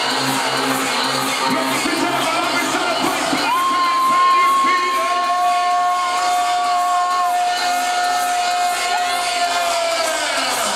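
Electronic dance music played loud through a hall's sound system, with a crowd cheering. The low beat drops out about two seconds in, and long held high notes take over.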